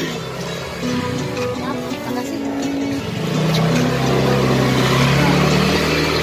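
Electronic background jingle from a claw machine, short low notes stepping along. About halfway through, a low engine-like drone swells in underneath and the sound grows a little louder.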